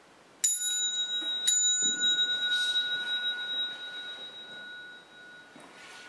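Small temple bell struck twice, about a second apart, each strike leaving a high, clear ring that fades slowly over several seconds.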